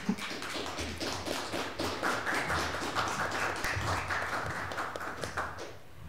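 Audience applause: many hands clapping together, dense at first and thinning out until it stops shortly before the end.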